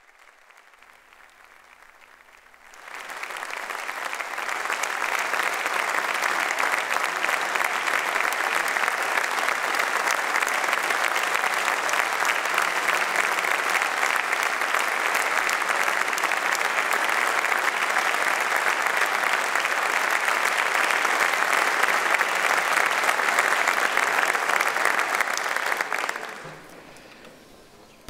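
Audience applause in a large hall: it starts about three seconds in, quickly swells to a steady, sustained clapping for over twenty seconds, and dies away near the end.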